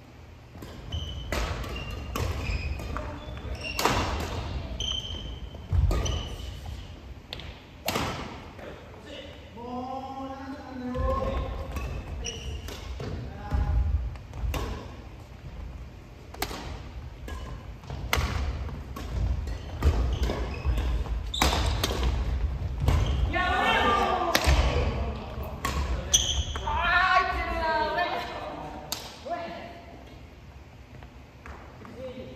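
Badminton play in a large gym: rackets striking shuttlecocks with sharp cracks and players' footsteps thudding on the wooden floor, with players calling out a few times.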